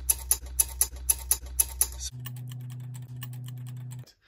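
VW/Audi 2.0 TSI turbocharger wastegate flap rattling as it is worked by hand: sharp metallic clicks about four a second, then faster, fainter ticking about halfway through, over a steady low hum. The rattle is the sign of a worn-out wastegate bush.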